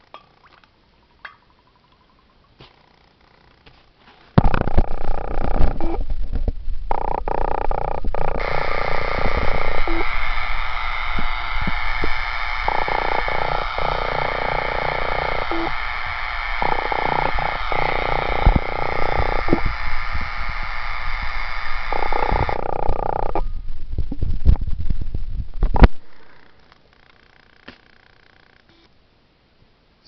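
Spark gap on a 10 kV transformer circuit arcing with a loud, rough crackling buzz over a low hum. It starts abruptly about four seconds in and stops near the end as the circuit is switched off.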